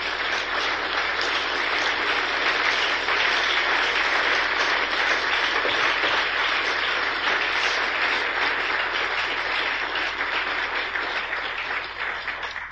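Audience applauding after a lecture: dense, steady clapping that swells in, holds, and starts to thin out near the end.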